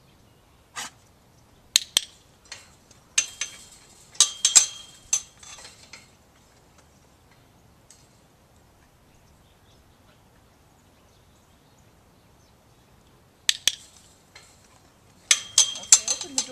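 A metal chain-link gate clanking and rattling as its latch is worked and it is opened: several sharp clinks in the first few seconds, then quiet for several seconds, then more clanks near the end as it is moved again.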